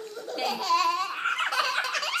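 A toddler laughing, a high-pitched laugh that starts about half a second in and carries on.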